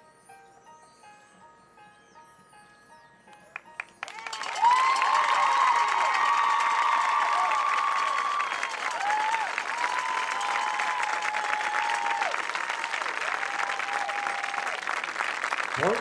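Soft repeating mallet-percussion notes from a marching band's front ensemble, then from about four seconds in a stadium crowd breaks into loud applause and cheering that carries on.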